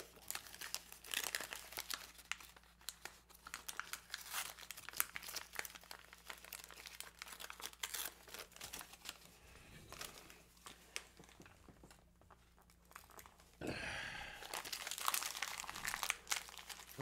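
Gift wrapping paper crinkling and rustling as it is handled and unwrapped, in irregular crackles, with a louder stretch of rustling about two seconds before the end.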